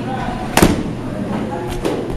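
Baseball bat hitting a pitched ball with a sharp crack about half a second in, followed by a fainter knock near the end.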